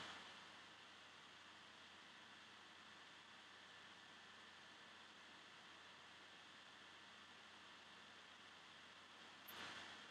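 Near silence: faint, steady room tone and microphone hiss.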